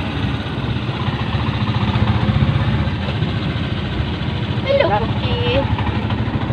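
The motorcycle engine of a tricycle (motorcycle with sidecar) running steadily while under way, heard from inside the sidecar.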